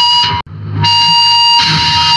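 Grindcore/powerviolence recording: distorted electric guitar holding a sustained high whining note. About half a second in it cuts out to a split-second of silence at a track change, then swells back in.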